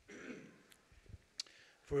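A man clearing his throat once, followed about a second later by a single sharp click, before he starts reading aloud.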